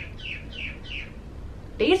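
Birds calling: a quick run of short falling chirps, about three a second, over the first second.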